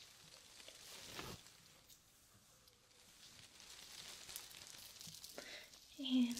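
Faint rustling and brushing of a lace dress's fabric handled by hand, with a soft brush stroke about a second in and light crinkling later on.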